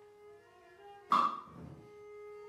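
Contemporary chamber music: held, sustained string tones, cut across about a second in by one sharp, loud attack that dies away within about half a second.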